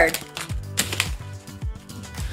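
Background music with a steady beat, with light clicking and rustling of trading cards being flipped through by hand.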